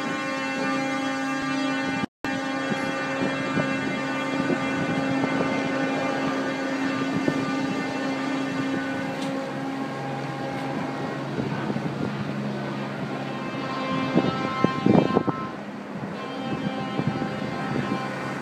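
Ship horns blowing long, sustained salute blasts, several pitches sounding together; about ten seconds in the higher horn stops and a lower one carries on. Wind buffets the microphone throughout, and the sound cuts out briefly about two seconds in.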